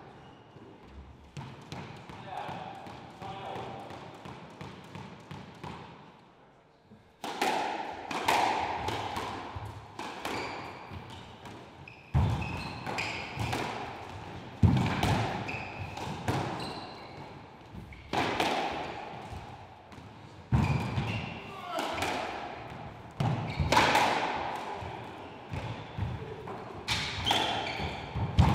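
Squash rally: the ball is struck by rackets and smacks off the court walls, sharp echoing hits about every second or so, starting about seven seconds in.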